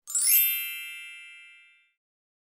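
A chime sound effect: a quick sparkle of high tinkling notes right at the start, then several bright ringing tones that fade out over about a second and a half.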